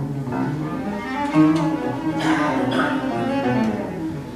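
Small chamber orchestra playing, with low bowed strings (cello) holding sustained notes and higher instruments joining in from about a second in.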